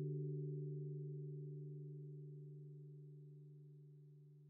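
The tail of a held, low chime-like chord from an end-card ident, fading out slowly and evenly.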